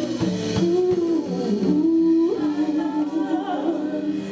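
A woman singing a gospel song live over instrumental accompaniment, holding a long note about two seconds in that slides up at its end.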